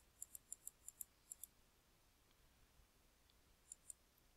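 Faint computer mouse button clicks: a quick run of about eight in the first second and a half, then two more near the end. They come from clicking a scroll arrow to step down a file list.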